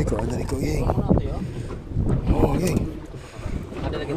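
Wind rumbling on the microphone aboard a small fishing boat at sea, with people's voices talking over it as a fish is hauled up on the line.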